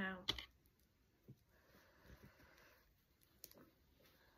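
Faint scattered clicks and soft rustling from hands fastening a hair elastic onto the end of a braid, with one sharper click near the end.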